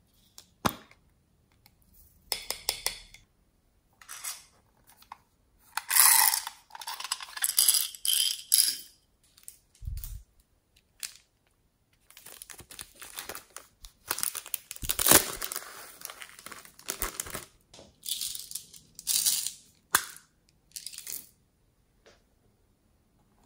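Small plastic toys and containers being handled close to the microphone: irregular clicks, rattles and rustling, with a dull thump about ten seconds in.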